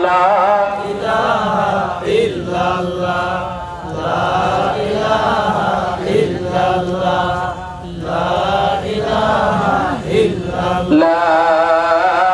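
A man chanting Islamic devotional phrases in a drawn-out, melodic voice. The phrases last about two seconds each, with short breaks between them.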